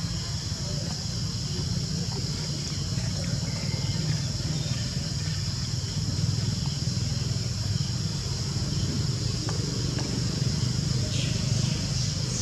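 Steady outdoor background noise: a low hum under a steady high-pitched drone, with a few faint short chirps near the end.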